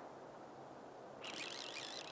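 Fly reel's drag buzzing as a hooked steelhead pulls line off. The buzz starts about a second in, with a high whine that wavers up and down, over a faint steady hiss.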